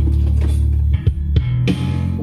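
Music with a deep bass line, guitar and drums, played from a phone through an NR702U amplifier driver board into a poor-quality loudspeaker box. The bass note changes about a second in.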